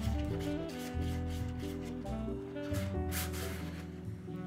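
Background music with a steady beat, over the faint repeated scraping strokes of a glue stick rubbed back and forth across a sheet of paper.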